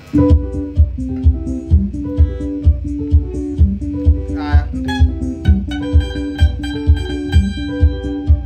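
Electric guitar playing a Kamba benga rhythm pattern of quick, repeated picked notes. Under it runs a steady low beat, about two pulses a second.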